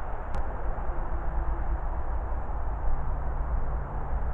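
Steady rumble and hiss of distant motorway traffic carrying through woodland, with a single sharp click just after the start.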